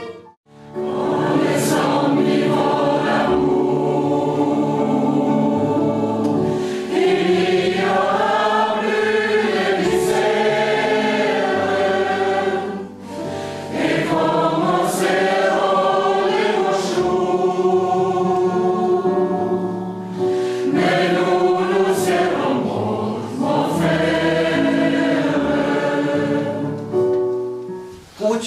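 Mixed choir of men and women singing a hymn in sustained phrases, with keyboard accompaniment. The sound breaks off briefly about half a second in, and the choir pauses shortly between phrases.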